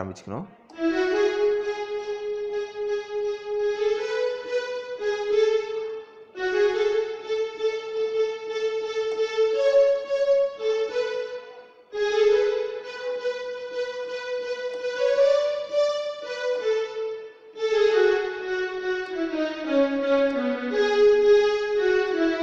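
Electronic keyboard playing a single-note lead melody in held notes, in four phrases with short breaks between them.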